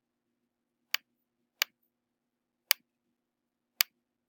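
Four short sharp clicks of a computer mouse, spaced about a second apart, over a faint hum.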